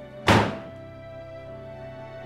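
A door slammed shut once, a single loud bang about a third of a second in that dies away quickly. Slow, sad background music with long held notes plays under it.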